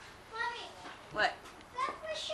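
Young children's high voices calling out during play, in short bursts, loudest a little past a second in.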